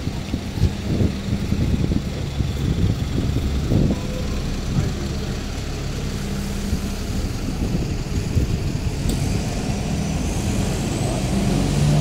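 Street traffic noise dominated by double-decker buses idling and creeping in a backed-up queue, a steady low engine hum. A faint rising whine comes in near the end.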